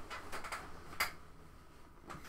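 A few faint clicks and light knocks of things being handled on a desk, the sharpest about a second in.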